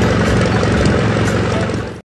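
Deutz-Fahr tractor engine running steadily as it pulls a working round baler.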